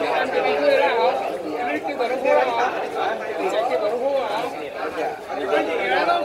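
Several men talking over one another: continuous overlapping chatter.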